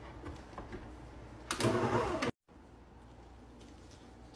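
Dison stand mixer running, its motor driving a dough hook through soft bread dough with a steady hum. It grows louder for a moment about halfway through, and a brief cut of silence follows before the quieter hum carries on.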